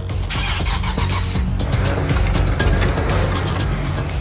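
Nissan 370Z engine revving as the car is driven against a wheel clamp fitted to its front wheel, with a rushing noise that is loudest two to three seconds in.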